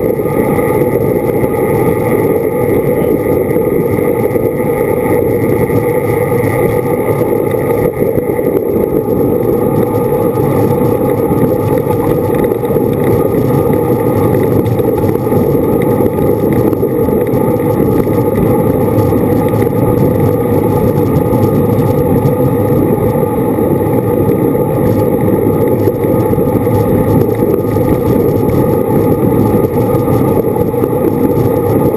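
Steady rush of wind over the microphone of a moving cyclist's camera, with road noise from riding a bicycle on pavement.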